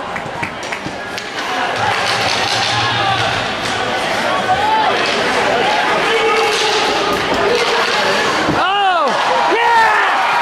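Ice hockey rink sound: spectators talking and calling out, with sharp knocks of stick and puck against the boards. Near the end comes one loud rising-and-falling shout as the crowd starts to cheer a goal.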